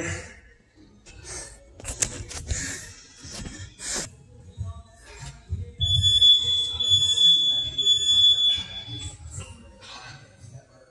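A few sharp knocks of gym equipment being handled, then a steady high-pitched electronic beep held for about three seconds.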